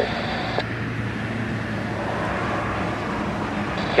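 Steady drone of a Cessna 172's piston engine and propeller heard inside the cabin, with airflow noise. A radio hiss cuts off with a click just after the start.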